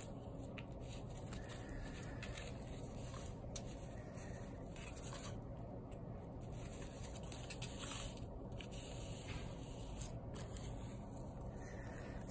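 Faint rustling and rubbing of yarn and a plastic weaving needle being worked over and under the string warp of a cardboard loom, then the yarn being drawn through, over a steady low background hum.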